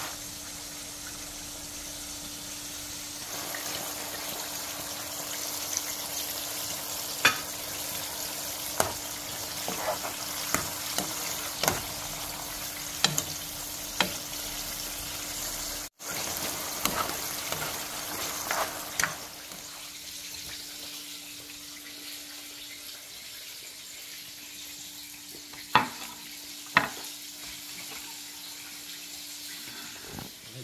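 Chicken and zucchini sizzling in a sauce in a frying pan, with a spoon clicking against the pan now and then as it is stirred, over a steady low hum.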